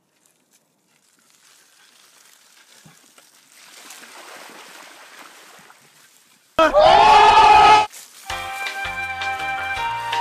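Bicycle tyres sloshing through a long muddy puddle, a splashing hiss that grows louder over a few seconds. About six and a half seconds in, a very loud pitched sound with a rising glide lasts about a second, and then music with a steady beat starts.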